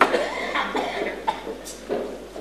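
A sudden cough at the start, over the indistinct murmuring of a crowd of voices.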